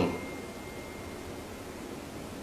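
Steady background hiss in a pause between words, with a faint thin high tone that fades out about two-thirds of the way through.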